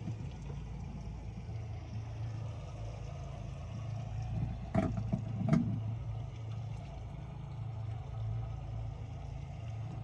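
Boat engine idling with a steady low hum. Two short sharp sounds come under a second apart midway.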